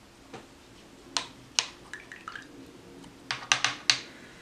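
Sharp hard clicks and taps from painting supplies being handled: a faint one near the start, two loud ones a little after a second in, a few soft taps, then a quick run of four loud clicks near the end.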